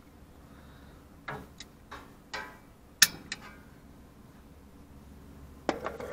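A few scattered light clicks and knocks, the sharpest about three seconds in, over a low steady hum.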